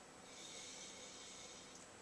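Faint, soft sniffing through the nose as a glass of white wine is smelled, a drawn-out inhale lasting about a second.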